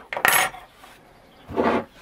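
A metal ruler set down on the workbench with one brief metallic clatter, about a quarter-second in.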